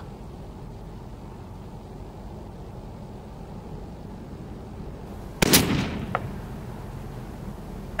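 A single shot from an 18-inch-barrel AR-15 in 5.56 firing a 77-grain match load, about five and a half seconds in, with a short echo trailing after it.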